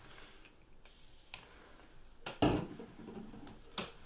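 Handling noise from a makeup brush and eyeshadow palette: a few scattered light clicks and taps, the loudest a small knock about halfway through.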